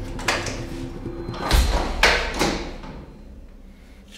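Heavy police-cell door shutting with a deep thud about a second and a half in, followed by two sharper knocks, over fading background music.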